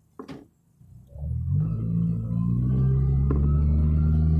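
Suzuki Sidekick's engine heard from inside the cabin, pulling under load: a low, steady drone builds up about a second in and holds, with a faint whine slowly rising above it.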